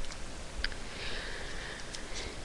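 A faint sniff, a breath drawn in through the nose close to a headset microphone, over low background hiss, with a small click just before it.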